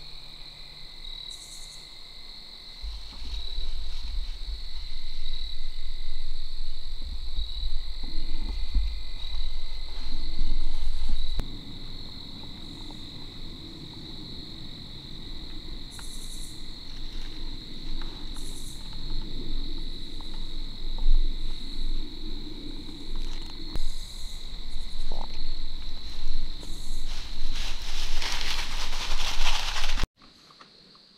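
Insects trilling steadily at a single high pitch, with a low rumble on the microphone for several seconds in the first half and a burst of rustling near the end.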